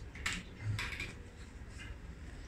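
Handling noise of plastic enema-bulb parts as nozzle tips are swapped: a few short, light clicks and rustles.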